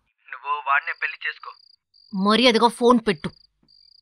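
Crickets chirping in a high, steady trill that breaks off and starts again several times, under the talk of a phone call.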